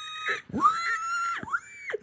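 A man imitating a pig's squeal with his voice: three high-pitched squeals in a row, each rising sharply, held and falling away, the middle one longest.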